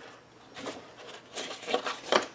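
Sheets of scrapbook paper and cardstock rustling as they are handled and slid on a countertop, a few short rustles about half a second in and again near the end.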